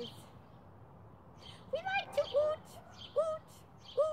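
A woman's voice, high-pitched and in short phrases, starting about two seconds in after a near-silent pause.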